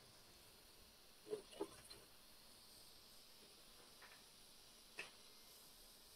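Near silence: room tone with a few faint, brief sounds, two about a second and a half in and one shortly before the end.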